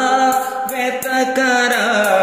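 A man singing a Telugu devotional bhajan, drawing out a long wavering note over steady musical accompaniment.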